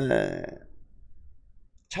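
A man's voice: a short drawn-out syllable that falls in pitch and trails off within about half a second, starting with a click. A quiet pause follows.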